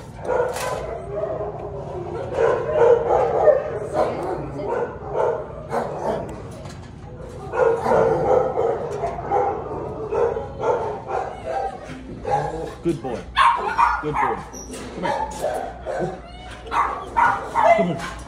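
Dogs in shelter kennels barking and yipping, with indistinct voices in the background.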